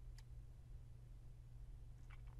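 Near silence: a low steady hum with a single faint computer-mouse click just after the start.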